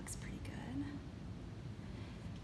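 Faint, brief murmured speech over a low steady background hum, with a couple of light clicks near the start.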